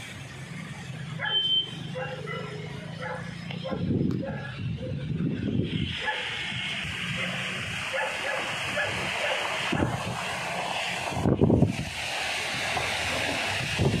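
Heavy rain pouring down, a steady hiss that grows stronger about six seconds in. Two loud, deep rumbling bursts stand out, one about four seconds in and one near the end.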